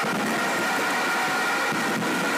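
Steady crowd noise of a football stadium during a penalty shootout: an even, unbroken hubbub with a few faint held tones in it.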